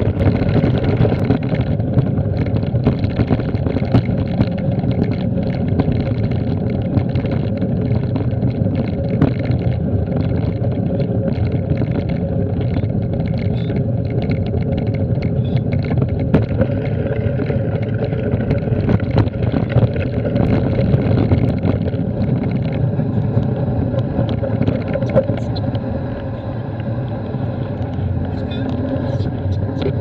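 Steady loud rumble of wind on the microphone and tyre noise from a bike running fast over a gravel track, with frequent small clicks and rattles.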